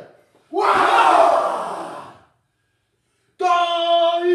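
Haka performed by a group of young men: about half a second in they shout together in one loud, rough cry that fades over nearly two seconds. Near the end a single voice starts a long, held chanting call.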